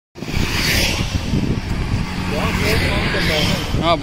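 Rumbling wind noise on the microphone from a moving vehicle travelling along a road, with a faint steady low engine tone; it starts abruptly.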